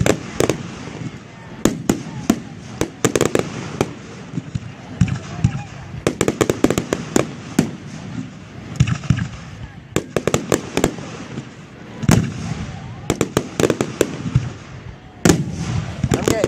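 Aerial firework shells bursting overhead: clusters of sharp bangs and crackles come in quick runs, with short lulls between them.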